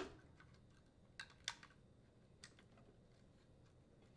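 Near silence with three faint, short clicks in the first two and a half seconds: plastic motor wire connectors being handled and pushed together.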